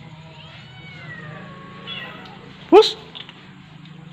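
Stray kittens meowing. Faint, drawn-out mews fall in pitch through the first two seconds, then one loud, short meow rises in pitch close to the microphone near three seconds in.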